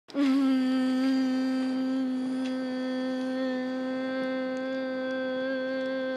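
A person humming one long note, held at a steady pitch, starting suddenly at the very beginning.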